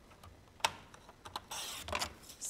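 Handling clicks on a sliding-blade paper trimmer, one sharp click about half a second in and a few lighter ones, then a short swishing scrape near the end as the blade cuts a strip of patterned paper.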